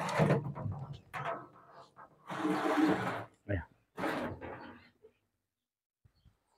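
A painted sheet-metal lid handled and slid over a square metal wax-melting trough: a few separate scraping rasps and a short dull knock, stopping about five seconds in.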